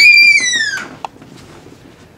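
A child's high-pitched squeal, imitating a scream. It holds for about half a second and then slides down in pitch, lasting under a second.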